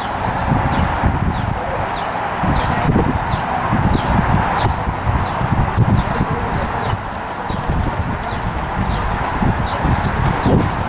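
Hoofbeats of horses moving on soft dirt footing, dull irregular thuds. Small birds chirp above them in short falling chirps, repeated throughout.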